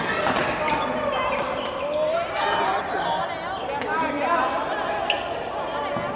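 Badminton rally in a large hall: sharp racket strikes on the shuttlecock, the loudest about five seconds in, echoing in the hall, with voices alongside.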